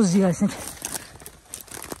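Footsteps over dry fallen pine branches and twigs, with irregular small cracks and rustles underfoot. A man's voice is heard briefly at the start.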